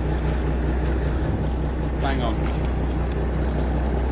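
Escort boat's engine running at a steady low drone, with a haze of wind and water noise over it.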